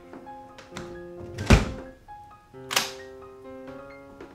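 Film score of sustained held notes, hit twice by heavy thuds: a deep, loud one about a second and a half in and a brighter, swishing one just under three seconds in.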